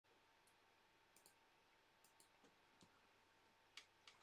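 Near silence, with a few faint, irregular clicks, the clearest one shortly before the end.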